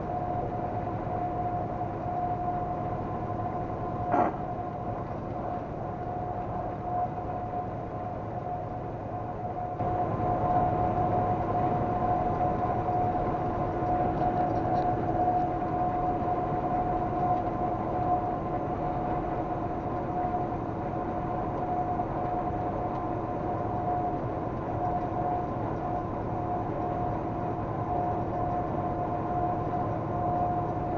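Cab noise of a vehicle driving at highway speed: a steady road and engine drone with a high, steady whine running through it. One short click about four seconds in, and the drone gets louder about ten seconds in.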